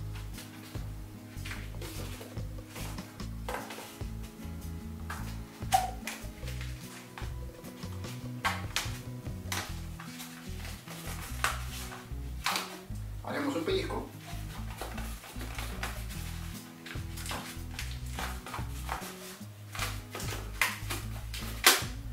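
Background music with steady low notes, over the squeaks and rubs of a latex 260 modelling balloon being twisted and handled, with a sharp crack near the end.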